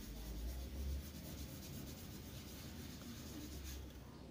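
Round hand-held pad rubbing over the back of paper laid on an inked linden woodblock, pressing the watercolour print: a faint, continuous scratchy rubbing.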